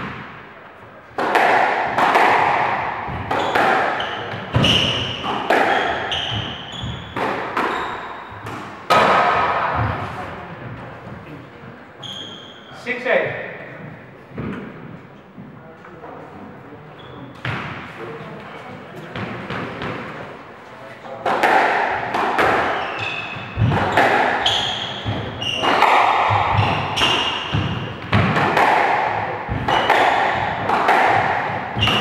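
Squash rallies: the ball is struck by rackets and smacks off the front wall and glass, with sneakers squeaking on the wooden court floor and echoing in the enclosed court. There is one rally in roughly the first dozen seconds, a quieter pause, then another rally from about two-thirds of the way in.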